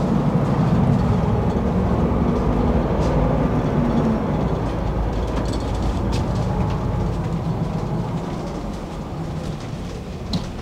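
Steady low rumble of a 2017 Prevost X3-45 motorcoach on the move, its rear-mounted Volvo D13 diesel and tyre noise heard inside the coach's rear living area. A hum within the rumble drops in pitch about four seconds in, and the whole sound eases off slightly near the end.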